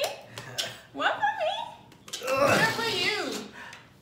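Excited voices without clear words: people laughing and calling out, with a loud shout lasting about a second, about two seconds in.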